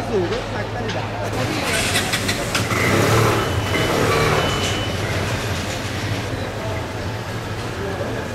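Street traffic: a vehicle passes, building to its loudest about three seconds in and fading by about five seconds, over a steady low engine hum. People's voices are heard at the start.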